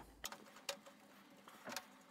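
A few faint clicks and scrapes from a screwdriver turning out the screw that holds a Macintosh IIx power supply in place.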